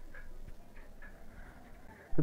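Faint ticking, a few soft ticks a second, over low background noise.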